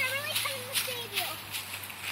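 A young child's high-pitched, wordless sing-song voice, gliding up and down for about the first second, over short rustles of pine branches and needles as she climbs.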